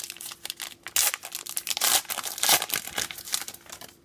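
Plastic wrapper of a 2016 Topps Gypsy Queen baseball card pack being torn open and crinkled. A run of irregular crackles, loudest in the middle, dies away near the end.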